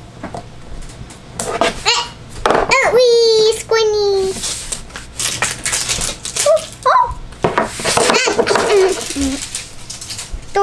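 A child's wordless vocal sounds and exclamations, with scattered clicks and rustles of a plastic toy capsule being handled and opened.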